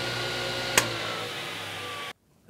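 Ridgid table saw's induction motor running at speed just after being started on household AC power, the blade spinning with a steady whine. There is a sharp click a little under a second in.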